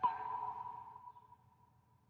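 A synthesized electronic note in the music: a sharp hit whose pitch drops quickly, then one steady ringing tone that fades away over about a second and a half.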